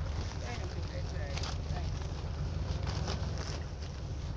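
Wind buffeting a phone's microphone in a steady low rumble, with brief rustles from fingers handling the phone and faint voices.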